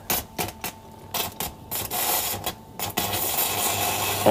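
Electric arc welder striking an arc: a run of short, sharp crackles and pops, turning into a denser, steadier crackling hiss from about three seconds in as the arc holds.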